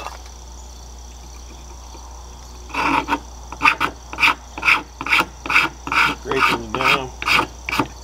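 A knife blade scraping a resin-rich fatwood stick in quick regular strokes, about two a second, starting about three seconds in; the later strokes squeak.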